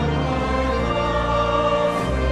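A choir singing a hymn in sustained chords with instrumental accompaniment, the chord changing about a second in.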